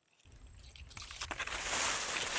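Wind rustling through a field of drying, stunted corn, fading in from silence and growing louder over the first second and a half, with a low rumble underneath.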